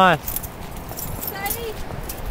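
Footsteps on a dirt trail with rustling of clothes and shrubs, a scatter of small light clicks over a steady hiss, and a faint voice briefly in the middle.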